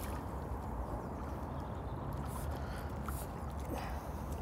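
Faint water sounds from a hooked carp being played close in at the margin, over a steady low rumble of outdoor background noise.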